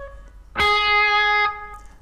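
Electric guitar: the previous bent note fades out, then about half a second in a single picked note rings at a steady pitch for about a second and is cut off short.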